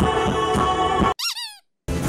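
Live band music with a low beat pulsing about four times a second, cut off abruptly a little over a second in. A brief high squeak follows: a quick run of chirps, each rising and then falling in pitch. Then a short dead silence, and new band music starts right at the end.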